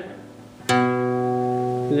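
A guitar note plucked once on a single string at the seventh fret, starting about two thirds of a second in and ringing out steadily for over a second.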